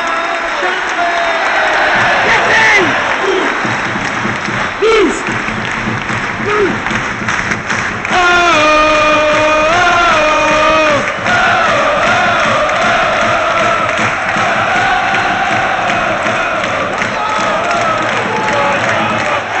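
Football crowd in the stands chanting and singing together, with scattered shouts in the first few seconds. A loud nearby voice holds a sung line for about three seconds midway, and the singing carries on in a wavering chant afterwards.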